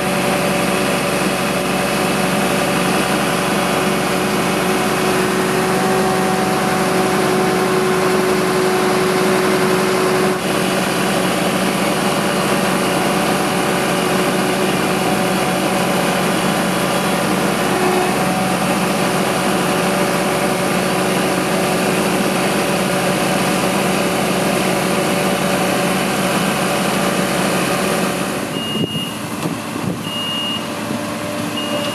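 Fire brigade aerial ladder truck's engine running steadily with a few constant tones while the turntable ladder is worked. Near the end the sound changes and short high warning beeps sound twice.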